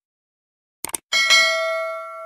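Subscribe-button animation sound effects: a quick double mouse click, then a bright notification-bell ding, struck twice in quick succession, that rings and fades out.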